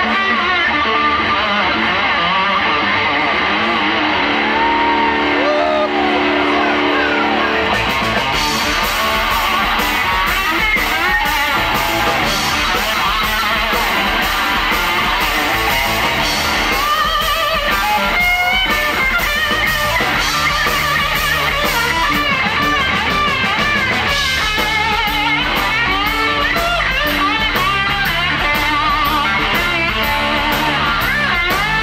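Live blues-rock band: an electric guitar played with a slide, its notes gliding, alone at first; about eight seconds in the drums and cymbals and a bass guitar come in and the full band plays on.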